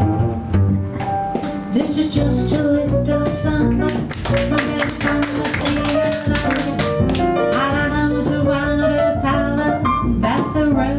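Live jazz trio playing a bossa nova: plucked upright bass and piano, with a woman's singing voice coming in about two seconds in.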